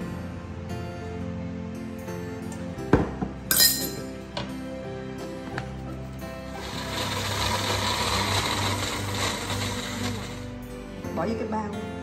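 Small personal blender running for about four seconds, starting about six seconds in, pureeing a thick paste of ginger, galangal and fresh turmeric thinned with a little water. A couple of sharp knocks from the jar and spoon come about three seconds in.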